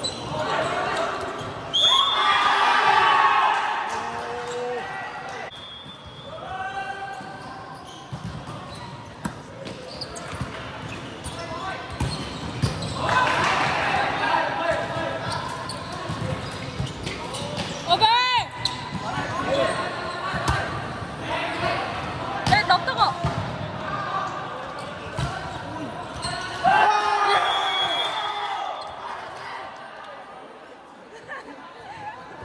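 Volleyball play in a large sports hall: players and spectators shouting and cheering in loud bursts, with sharp thuds of the ball being struck and bouncing. A brief high squeal sounds about two thirds of the way through.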